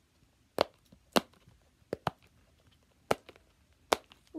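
Silicone push-pop fidget toy, flower-shaped, being pressed from its quiet side: about six sharp single pops at uneven intervals as its bubbles flip through.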